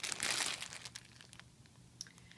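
Clear plastic zip-top bag of wax melts crinkling as it is turned over in the hands. The crinkle is densest in the first half second, then thins to a few light crackles and stops about halfway through.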